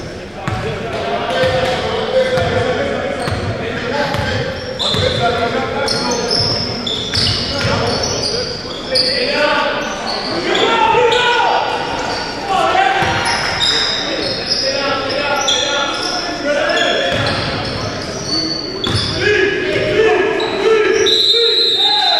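A basketball being dribbled on a hardwood gym floor during play, with short high squeaks and players' voices, all echoing in a large gym.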